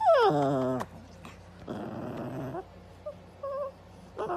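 A Cavalier King Charles spaniel vocalizing: a loud whine that slides down in pitch right at the start, then a rougher, longer moan about a second later, and a few faint short whines near the end.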